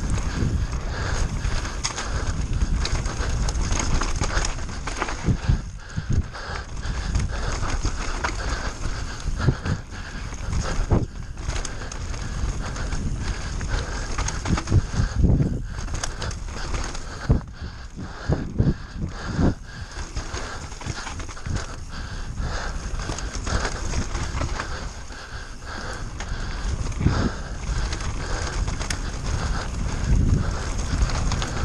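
Giant Reign mountain bike descending a wet dirt trail at speed, heard from a bike- or helmet-mounted action camera: constant wind rush and tyre rumble with a busy rattle and knocking from the bike over bumps.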